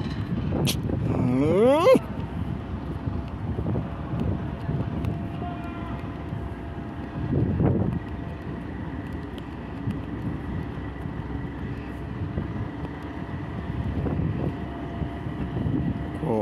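Diesel engine of a lattice-boom crawler crane running steadily under load while it lifts a precast concrete bridge girder, a low rumble with a thin steady whine over it. A voice calls out briefly near the start.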